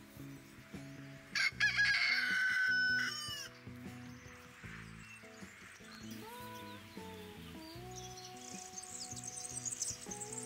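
A rooster crows once, about a second in, a loud held call of about two seconds, over background music. Small birds chirp quickly and high-pitched near the end.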